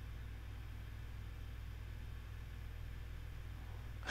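Steady low hum of the TMS printhead-cleaning machine's pump as it circulates distilled water through the printhead.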